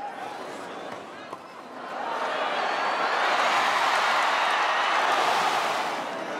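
Large tennis stadium crowd reacting during a long rally, its noise swelling from about two seconds in and staying loud.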